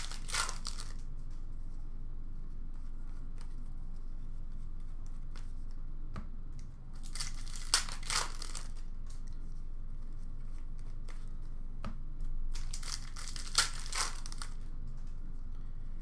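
Wrappers of hockey card packs crinkling and tearing as packs are ripped open and cards handled, in three short bursts: near the start, about halfway through, and again a little later, with small clicks of cards in between.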